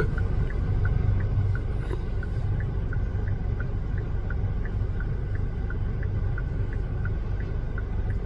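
Car idling, heard from inside the cabin as a steady low hum. A faint high beep repeats about three times a second throughout.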